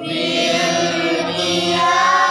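A group of voices reciting Quranic verses together in unison in the melodic Sikah maqam, drawing out long held notes. A new phrase starts right at the beginning, after a brief breath.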